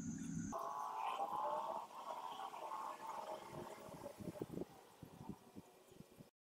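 Gold chloride solution poured from a glass beaker into a filter funnel: a gurgling trickle that fades, with a few light taps near the end.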